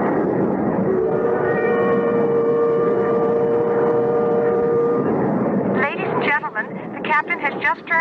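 Radio-drama sound effect of a jet airliner's steady cabin drone. A held tone with overtones sounds over it from about a second in until about five seconds, and a voice starts near the end.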